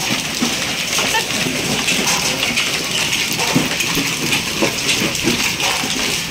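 A hailstorm's steady downpour, hail and rain pattering densely on the ground and roof.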